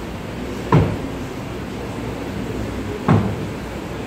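Shoes stamping on a stage floor in a formal march: two heavy thumps, one about a second in and one near three seconds in.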